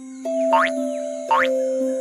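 Gentle instrumental children's music with held notes, and two quick rising 'boing' cartoon sound effects under a second apart, marking a cartoon rabbit's hops.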